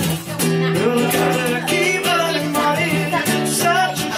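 Amplified acoustic guitar strummed in a steady rhythm, with a man's sung melody wavering over the chords.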